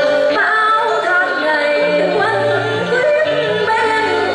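A woman sings a Vietnamese stage-opera melody with gliding, bending pitch over instrumental accompaniment that holds sustained low notes.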